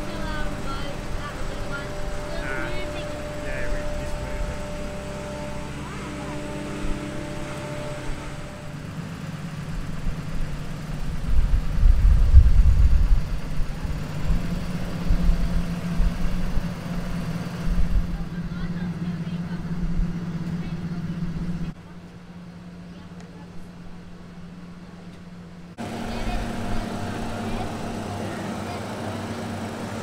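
Engine of a boatyard haul-out machine running with a steady low hum, growing louder for a couple of seconds about twelve seconds in and dropping quieter for a few seconds past the twenty-second mark.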